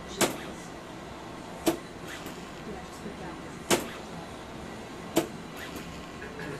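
ARTAS robotic FUE system's harvesting needle making four sharp mechanical clicks at uneven intervals of about one and a half to two seconds as it punches out follicular units, over a steady room background.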